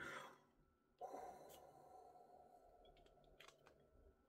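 Near silence with a faint breath like a sigh about a second in, trailing away, then a few soft clicks from handling the perfume bottle near the end.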